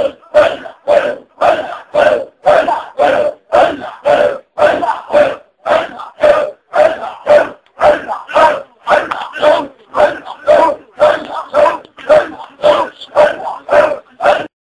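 A group of men chanting one short phrase over and over in an even, fast rhythm, a little over two chants a second: rhythmic Sufi zikr.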